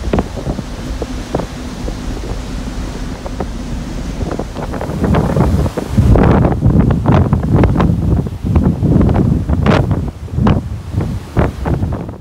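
Wind buffeting the microphone on a ship's open deck, over the rush of the ship's wake breaking alongside the hull. The wind gusts much louder from about five seconds in, in uneven blasts.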